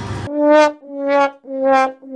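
Sad trombone sound effect: three short brass notes stepping slightly down in pitch, with the long last note starting at the very end. This is the comic "wah-wah-wah-waaah" cue for a letdown.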